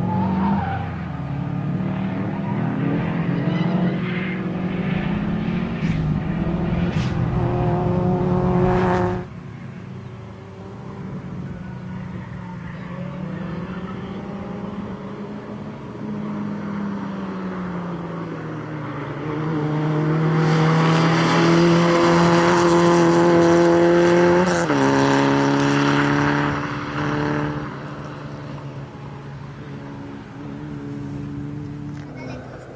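Peugeot 106 XSi engine revving hard, its pitch climbing in steps as the car is driven through a cone-and-tyre slalom. Later the tyres squeal over the engine note for several seconds, and the revs drop sharply about 25 seconds in, as at a gear change.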